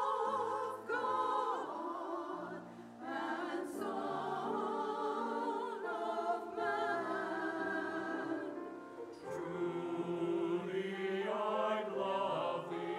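Mixed choir singing with vibrato, accompanied by a grand piano.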